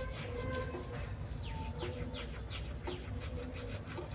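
Wet scrubbing of a toothbrush working through a mouthful of toothpaste foam, in quick repeated strokes. About halfway through, a quick run of short, falling chirps sounds over it.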